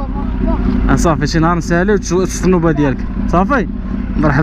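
Conversational talking over the steady low idle of a Kawasaki Z800's inline-four engine.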